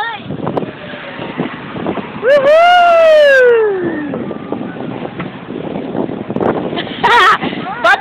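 A long whooping shout about two seconds in, its pitch rising and then falling away over more than a second, with a shorter vocal call near the end. Under it runs the steady noise of a moving amusement ride, with small knocks and rattles.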